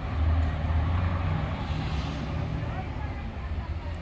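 Low, steady rumble of an idling vehicle engine, strongest in the first second or so.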